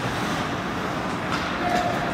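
Steady ice-rink game noise: skates scraping and carving the ice under a constant hall rumble, with a couple of faint stick or puck clicks in the second half.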